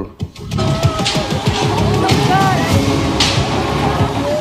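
Music mixed with voices over a dense, noisy background, from the soundtrack of a TV news report's montage of earthquake footage.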